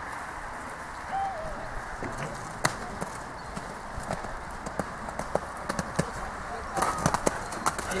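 Horse's hooves striking the arena footing in scattered knocks, coming more often near the end, over a steady outdoor background with faint voices.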